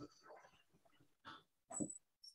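Near silence with a few faint, brief sounds; the loudest comes shortly before the end.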